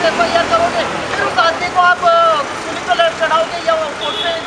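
A woman speaking in an animated voice into news microphones, with a steady hum of street noise behind her.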